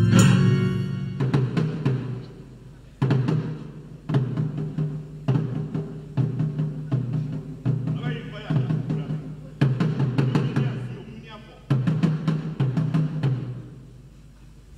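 A tall carved wooden drum struck with sticks in slow, irregular deep strokes that ring on between hits. Choir singing dies away at the very start.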